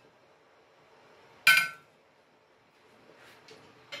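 A single bright clink of ceramic dishware about one and a half seconds in, ringing briefly as it dies away, with a few faint clicks near the end.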